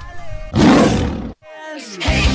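A man's playful vampire 'rawr' roar: a voiced start that swells about half a second in into a loud, rough growl and cuts off sharply. A short falling pitched tone follows near the end.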